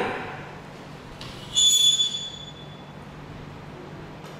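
A short, high-pitched squeak that fades away over about a second as a plastic transpirometer stand is handled and laid down on a tabletop.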